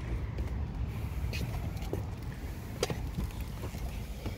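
Handling noise as someone climbs into a car's driver's seat through the open door: a few faint clicks and knocks over a steady low rumble.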